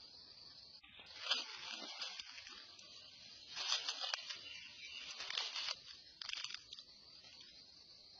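Four short bursts of crackling, rustling noise over a steady high hiss.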